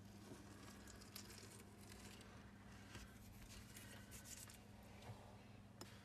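Near silence: room tone with a faint steady low hum and a few soft ticks.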